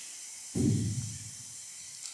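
Steady faint hiss of the hall's sound pickup between speakers, with one low, muffled thump about half a second in that fades out over about half a second.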